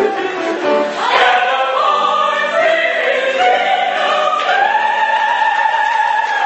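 A group of opera singers singing together in long, held notes. There is a brief break just before a second in, and the pitch steps up about halfway through.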